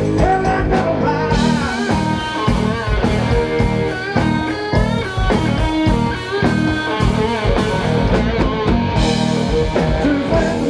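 Live rock band playing, an electric guitar carrying the lead with bending notes over the drums.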